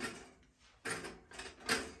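Pop-Tart pastries being slid into the slots of a four-slice stainless steel toaster: a few light knocks against the toaster, with a short word and a throat-clear near the end.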